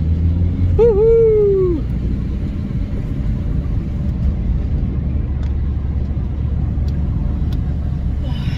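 Engine and road noise inside a moving van's cab, a steady low rumble. About a second in, a short hummed note that rises and then falls away.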